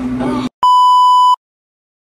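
A single steady electronic beep tone, edited into the soundtrack, lasting about three-quarters of a second and starting just after half a second in.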